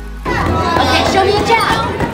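Music cuts off a moment in and gives way to children's voices, chattering and calling out, with music still underneath.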